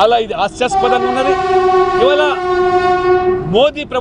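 A vehicle horn held in one long steady blast of about three seconds, sounding over a man's voice.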